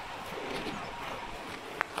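Cattle wading through a shallow, stony river, over a steady rush of running water and wind. A single sharp knock stands out near the end.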